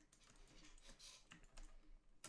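Near silence with faint, scattered clicks of a computer keyboard and mouse.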